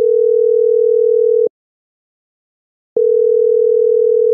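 Telephone ringback tone: a steady low beep that sounds for about a second and a half, stops for about as long, then starts again near the end. It is the sign of an outgoing call ringing before it is answered.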